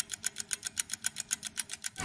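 Rapid clock-ticking sound effect, about seven or eight even ticks a second, marking a time-skip transition with fast-spinning clock hands.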